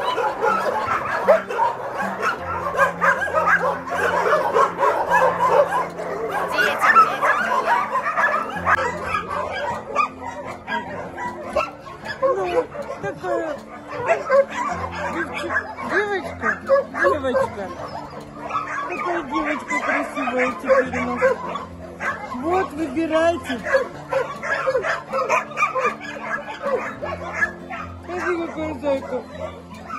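Background music with slow held chords, over which puppies whimper and yip in many short, high cries.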